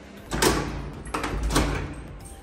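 Knocking on an apartment front door: two short bursts of knocks about a second apart.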